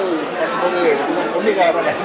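Speech only: a man talking, with other voices chattering around him.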